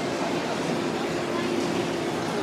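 Railway platform ambience: a steady wash of heavy rain with a murmur of waiting passengers' voices, and a faint steady hum for about a second midway.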